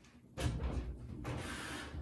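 Whirlpool top-load washer cabinet scraping and rumbling as it is shifted and tilted on the floor. The sound starts suddenly about half a second in and carries on steadily.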